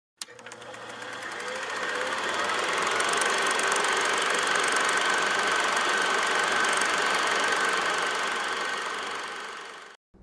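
Old film projector running: a steady mechanical clatter that starts with a click, fades in over the first couple of seconds and fades out near the end, with a run of lighter, higher clicks in the middle.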